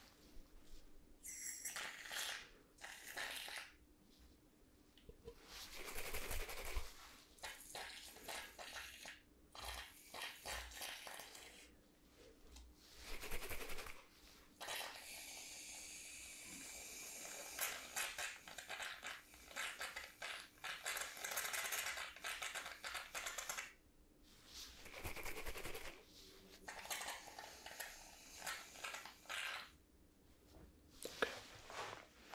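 Aerosol can of shaving foam sprayed into a wooden bowl close to the microphone, in a series of short spurts, with one long continuous spray of about eight seconds midway.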